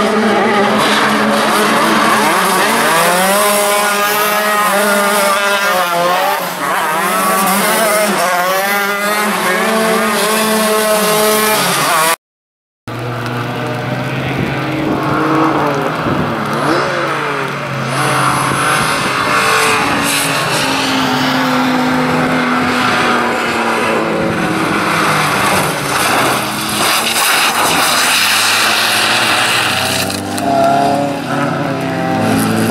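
Racing car engines revving hard as the cars pass, their pitch climbing and dropping again and again as they accelerate and lift off. The sound cuts out for about half a second near the middle, and then several engines run together.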